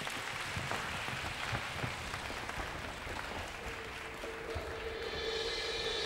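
Audience applause in a concert hall. About three and a half seconds in, a wind band comes in with one held note, and more instruments join on higher notes near the end.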